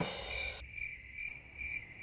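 Cricket-chirping sound effect: a steady high chirp that pulses about three times a second. It is the stock comic cue for an awkward silence after a joke falls flat.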